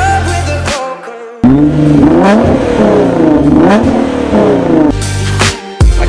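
A 2010 Nissan GT-R's twin-turbo V6, fitted with a full aftermarket exhaust, is revved up and down several times, sweeping up and falling back. The revving comes in a gap of about three and a half seconds in bass-heavy hip-hop music, which drops out about a second and a half in and comes back near the end.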